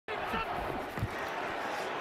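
Stadium crowd noise under a football broadcast, with faint indistinct voices and one dull knock about a second in.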